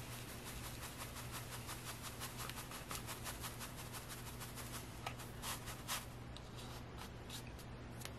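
Silica gel crystals trickling off a tilted tray into a plastic tub: a faint, steady granular hiss of many fine ticks, with a few louder ticks about five to six seconds in.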